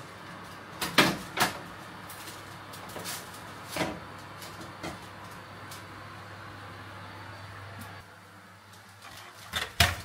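Built-in oven being opened and a metal baking tray pulled out and set down: several knocks and clatters of the tray and door, the loudest cluster near the end as the tray lands on the counter. A steady hum, the oven running, sits under them until about eight seconds in.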